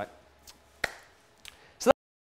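A few short, sharp knocks or clicks, the last and loudest just before the sound cuts off suddenly.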